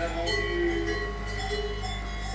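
Cowbells ringing irregularly, several bells of different pitches overlapping, over a steady low hum.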